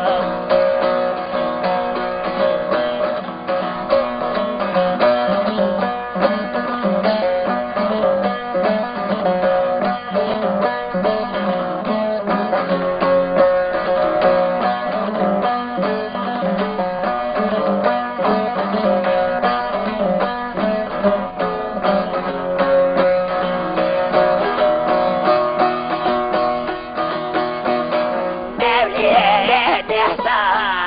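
Bağlama (saz), the long-necked Turkish folk lute, playing a fast instrumental passage between the sung verses of an âşık folk song, with a steady drone under a busy plucked melody. A man's singing voice comes back in near the end.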